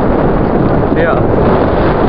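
Strong wind buffeting the camera's microphone, a loud, steady rumble that drowns out much else.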